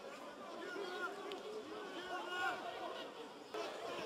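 Faint voices and chatter from players and spectators at a rugby match, heard under the broadcast's field ambience.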